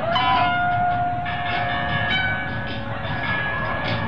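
Electric guitar feedback from a live rock band: several steady, horn-like held tones. A lower tone sets in at the start and holds for about two seconds, then a higher tone carries on to the end.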